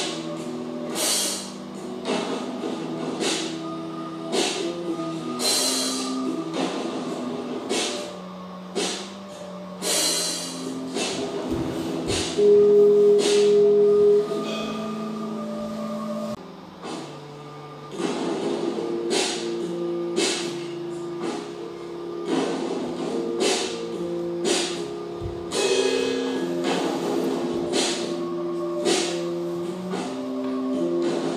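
Music: layered sustained notes with sharp percussive hits at irregular intervals, and one loud held note a little before the middle.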